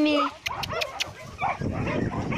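A woman's drawn-out sing-song call of a dog's name trails off. A few sharp clicks follow, then a low rustling.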